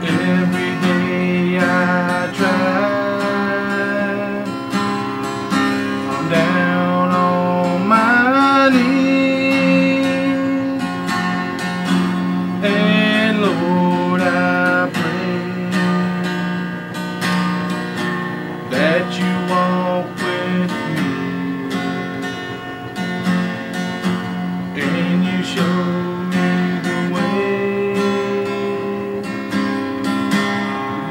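Acoustic guitar with a cutaway body, strummed and picked through a chord progression, with ringing, sustained chords.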